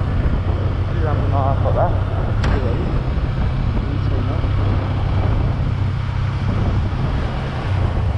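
Motorcycle engine running steadily in fourth gear while riding, under a haze of wind and road noise on the rider's microphone.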